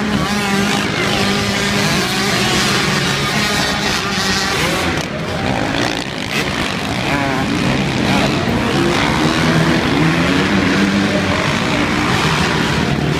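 A pack of motocross dirt bikes racing on an indoor arenacross track. Their engines rev up and down as they work around the course and over the jumps.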